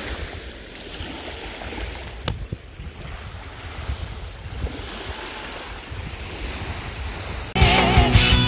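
Small waves washing onto a sandy beach, with wind buffeting the microphone. Near the end, loud guitar music starts abruptly.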